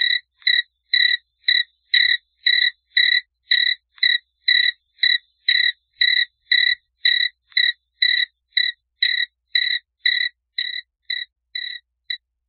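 Crickets chirping on a recording: short, clear, high chirps in an even rhythm of about two a second, growing a little fainter near the end.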